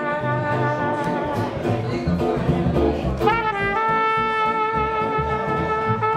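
Jazz band playing an instrumental passage: a lead line of sustained notes over bass and drums, settling into one long held note about halfway through.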